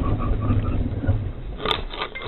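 Car's engine and road noise heard from inside the cabin, a heavy low rumble for about the first second that then eases. A single sharp click comes near the end.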